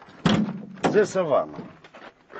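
Rear door of a van unlatched and pulled open: a sharp latch clunk about a quarter second in, with a man's voice over it just after.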